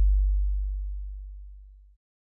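Deep sub-bass synthesizer note at the close of an experimental electronic track: one very low steady tone that fades away over about two seconds and cuts off just before the end.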